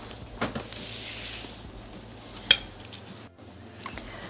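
A pie dish being handled on a tabletop: a few light knocks and clinks, with a brief hiss about a second in and the sharpest clink about two and a half seconds in.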